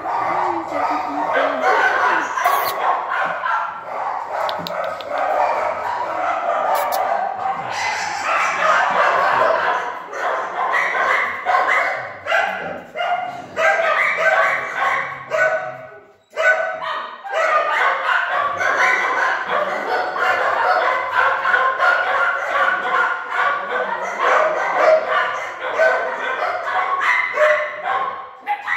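Many dogs barking and yelping over one another without a break, with one brief lull about halfway through.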